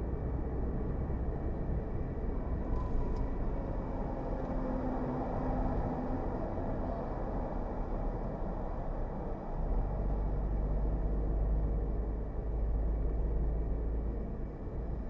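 Road and engine noise inside a moving car at highway speed: a steady low rumble of tyres and engine that gets heavier about nine and a half seconds in.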